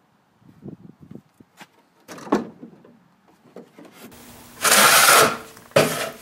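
A few faint knocks and a louder clack about two seconds in, then a long scraping stroke of a hand tool shaving the edge of a wooden fence picket, with the next stroke just starting at the end.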